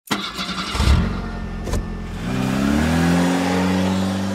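An engine starting and revving, its pitch rising about two seconds in and then holding steady, with two sharp knocks in the first two seconds.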